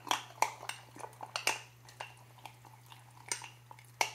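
A metal spoon stirring in a glass mason jar, clinking irregularly against the glass as almond milk is mixed into the oats and protein powder. The clinks come several a second at first and thin out past the middle.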